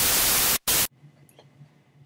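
Loud TV-style white-noise static that drops out once for a moment and then cuts off suddenly about a second in, leaving quiet room tone with a faint low hum.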